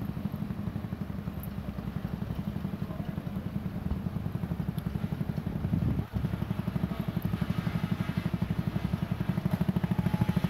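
Engine of a vintage fire engine running as the truck drives slowly past, a steady low rhythmic beat. The beat briefly drops out about six seconds in and comes back a little louder toward the end.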